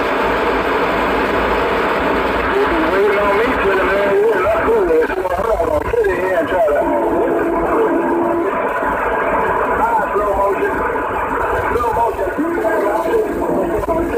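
Garbled, overlapping voices from several CB radio stations transmitting at once over the radio's static hiss, with a steady held tone twice, once in the middle and once near the end. The stations are keying up together to see whose signal comes out on top.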